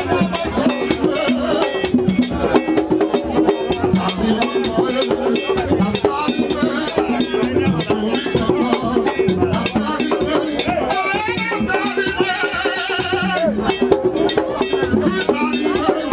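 Haitian Vodou ceremonial music: voices singing over steady drumming and rattles, with a high wavering voice rising above the rest near the end.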